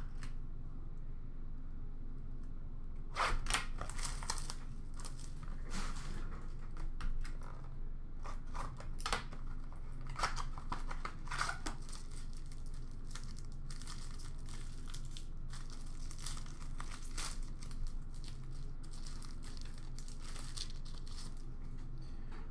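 Hockey card pack wrappers being torn open and crinkled, with cards handled, in clusters of short rustles. A low steady hum runs underneath.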